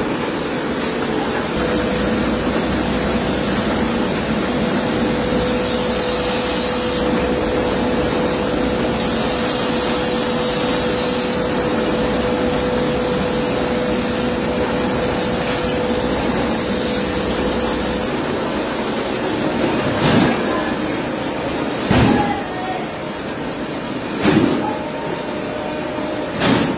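Plywood factory machinery running with a steady hum and noise. A different machine follows, with a short loud swish about every two seconds.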